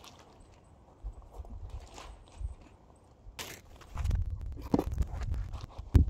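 Plastic ground sheeting rustling and crinkling as it is handled, with footsteps crunching on gravel: scattered short crackles, and a spell of low rumbling about four seconds in.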